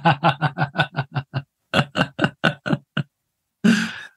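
Laughter: a run of quick pitched 'ha' pulses that fades out, a short pause, then a second run of laughs, ending in a sharp breath in near the end.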